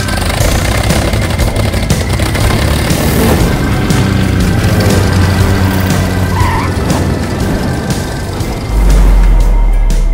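Logo-sting music with a rushing airplane fly-past sound effect over a low drone, swelling and ending in a deep bass hit near the end.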